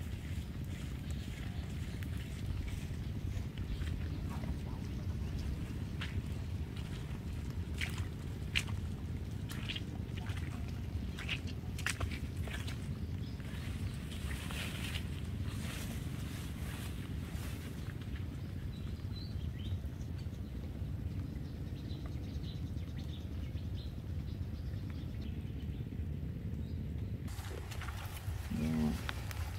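Wind buffeting the microphone in the open as a steady low rumble, with a scattering of short light clicks and rustles in the middle stretch.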